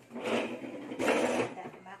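Plastic grocery bag rustling in two loud bursts as a hand reaches into it.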